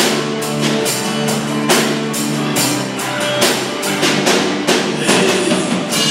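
Live band playing an instrumental passage without vocals: a drum kit keeps a steady beat, about two hits a second, under strummed acoustic guitar, electric guitar chords and bass guitar.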